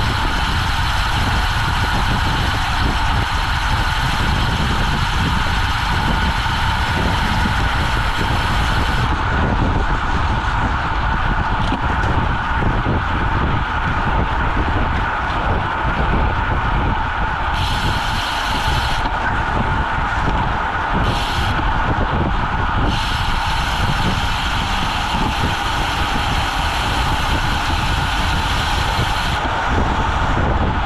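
Road bicycle riding at about 25–30 mph in a group: steady wind rush over the camera microphone with a low rumble of tyres on asphalt. A higher hiss drops out about nine seconds in, comes back in two short spells, and returns for most of the last seven seconds.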